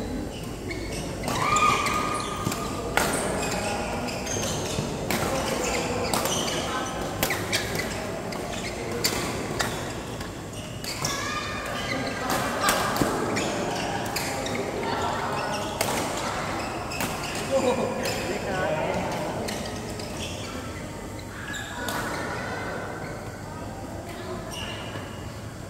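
Badminton rackets hitting the shuttlecock, as sharp, irregularly spaced strikes throughout, with players' voices in between, echoing in a large sports hall.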